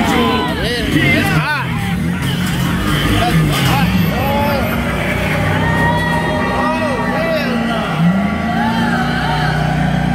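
A theme-park dark ride's soundtrack: a steady low droning score that changes pitch about eight seconds in, with swooping, warbling voices or effects over it and no clear words.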